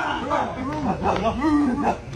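Men's short, repeated barking shouts, each rising and falling in pitch, made as threat calls to scare off a troop of monkeys.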